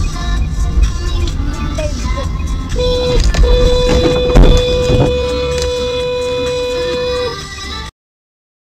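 Music playing, with a single steady horn-like tone held for about four seconds from about three seconds in, and one sharp thump, the loudest sound, about halfway through. The sound cuts off suddenly just before the end.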